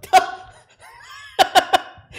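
A man laughing in short bursts, once just after the start and again about one and a half seconds in.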